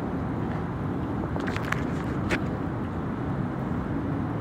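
Steady low rumble of city street traffic, with a few light clicks near the middle.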